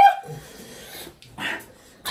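A person's short rising yelp at the very start, a pained cry at the burn of extremely spicy noodles, followed by two quieter breathy exhales.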